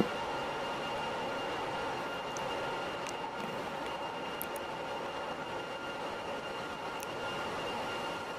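Ship's engine room machinery running: a steady, even mechanical noise with a few faint constant whines over it.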